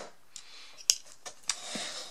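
Handling of the disassembled electric pencil sharpener's plastic housing and motor assembly: a sharp click about a second in and a weaker one about half a second later.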